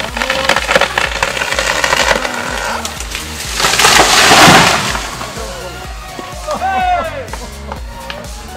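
A large felled conifer cracking and splintering at the hinge as it gives way, then a loud crash about four seconds in as it comes down through the surrounding trees. Voices shout near the end.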